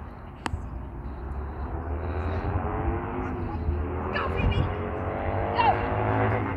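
A motor vehicle's engine running, its pitch rising slowly as it grows louder over the last few seconds, over a steady low rumble. A sharp click comes about half a second in, and a short falling call near the end.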